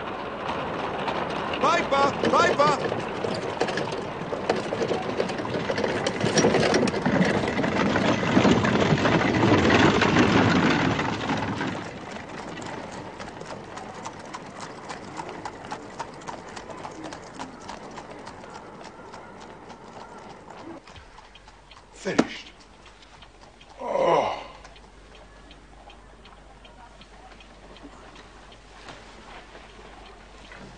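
Horses' hooves clip-clopping on the street with a bustle of indistinct voices, loud for about twelve seconds and then fading to a quieter background with faint ticks. Near the end two short, sharp sounds stand out, about two seconds apart.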